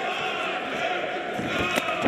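Boxing-arena crowd noise, a steady din of many distant voices, with one sharp knock near the end.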